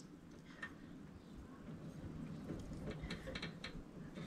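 Faint, scattered metal clicks and ticks of a socket wrench being worked on a lawn mower's oil drain plug, more frequent in the second half.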